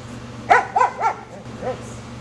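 A dog barking: three quick barks about half a second in, the first the loudest, then a fainter bark near the end.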